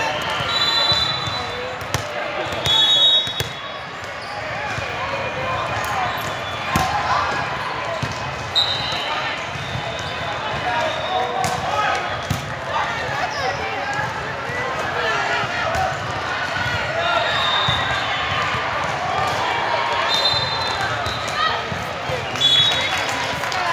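Sounds of a volleyball rally in a large gym: many overlapping voices of players and spectators calling out, with short high squeaks of sneakers on the court floor several times and sharp knocks of the ball being played.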